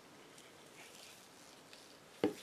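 Near silence: room tone, with a few very faint soft ticks.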